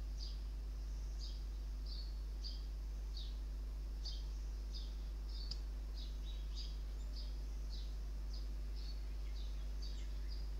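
A small bird chirping over and over, about two short chirps a second, each dropping in pitch, over a steady low hum.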